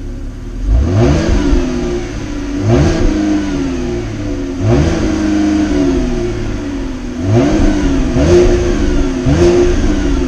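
2017 Chevrolet Impala Premier's 3.6-litre V6 exhaust, close at the twin tailpipes, revved five times from idle. Each rev climbs quickly and then falls back slowly to idle.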